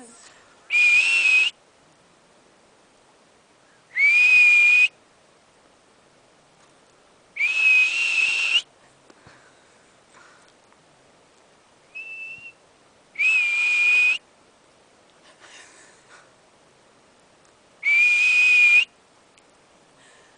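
Loud, high whistles, five long and one short, spaced a few seconds apart. Each slides briefly upward, then holds one pitch for about a second. A person and a hoary marmot are whistling back and forth, in the pitch of the marmot's alarm whistle.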